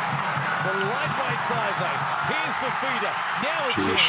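Rugby league television broadcast: a steady hum of stadium crowd noise with a commentator's voice talking over it.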